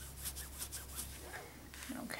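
A few quick, faint rubbing strokes in the first second or so: a hand wiping a craft mat clean.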